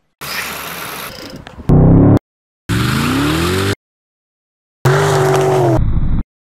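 Short edited clips of a car engine revving, each cut off abruptly with silent gaps between them. First comes a rush of noise, then three brief revs, the middle one rising in pitch.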